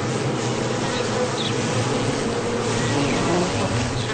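Honeybees buzzing together in a steady hum.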